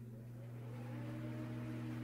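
A low, steady hum with a few higher overtones, slowly growing louder, with a faint tone gliding upward above it.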